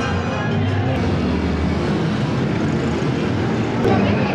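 Street traffic noise from motorcycles and cars going by, with music mixed in.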